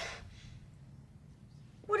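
The tail of a spoken word, then quiet low background noise for more than a second before a voice starts speaking again at the very end.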